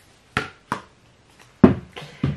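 Makeup items being handled and set down by hand: two light knocks, then a louder knock about a second and a half in.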